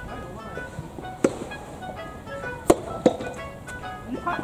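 Background music with three sharp knocks of a rubber soft-tennis ball on racket and court in a rally: one about a second in, then two close together near three seconds.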